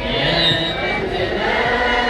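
Large group of voices singing an Ethiopian Orthodox Tewahedo hymn together in unison, with sustained notes.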